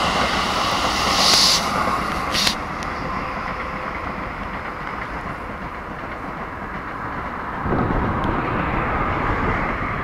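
Keikyu 1000 series stainless electric train running past close by, wheels clattering on the rails, with a brief high hiss about a second and a half in and a sharp click as the last car clears. The train's running noise then drops to a steadier, quieter rumble as it draws away, and a low rumble swells again near the end.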